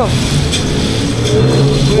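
Steady background noise of a roadside street market: a continuous low hum with traffic rumble.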